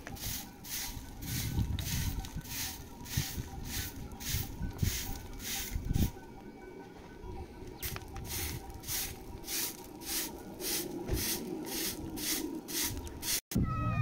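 Short straw hand broom swept briskly over dry dirt and gravel, about two strokes a second, with a pause of a couple of seconds around the middle before the strokes resume.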